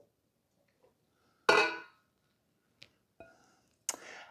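A spatula and a glass mixing bowl clinking as butter is scraped out over a steel mixer bowl. There is one clear clink about a second and a half in that rings briefly, then a few faint ticks.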